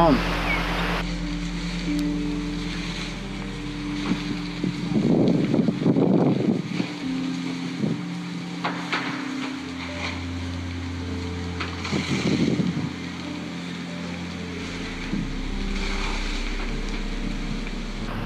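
Slow background music of sustained low chords that shift every few seconds, with brief voices twice in the middle.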